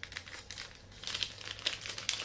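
Paper packaging crinkling in the hands: the wrapper and folded insert pamphlet of a Topps Star Wars dog tag pack being handled, a quick irregular run of short crackles.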